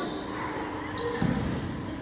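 A basketball bouncing on a gym floor: one dull thud a little past a second in, over faint background voices.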